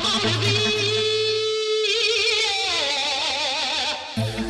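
Techno/trance electronic music: a lead line with a wide wavering vibrato and gliding pitch over a held tone, with a pulsing low bass that drops out a little before halfway.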